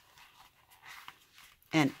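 Faint, soft handling sounds of hands working a needle with button thread into a hole in a laminated card notebook cover, close to near silence, then a woman's voice begins near the end.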